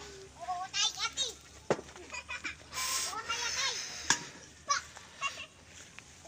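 Distant voices, in short broken calls, with a brief hissing rush about three seconds in and a couple of sharp clicks.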